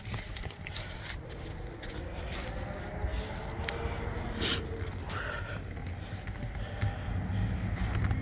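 Handling noise from a phone camera carried by someone walking, with a steady low rumble and scattered light knocks and scrapes as he steps out of the car onto concrete and back.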